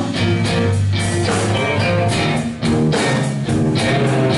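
Live rock band playing an instrumental passage: electric guitar over bass and drums. The sound dips briefly twice in the second half.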